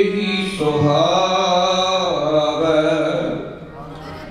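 Sikh kirtan: a man sings a long, wavering phrase of a hymn over harmonium and tabla, then the music drops quieter near the end.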